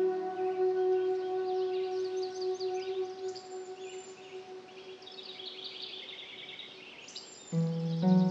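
A sustained ambient music chord dies away slowly under birdsong of quick chirps and trills. A new phrase of music comes in near the end.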